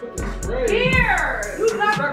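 A woman shrieking in fright, a high cry that rises and falls, over background music with a steady beat.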